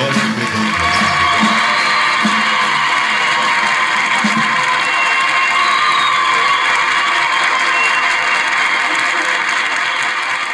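The band's closing notes on guitars, accordion and drums end about a second in, then a studio audience applauds steadily.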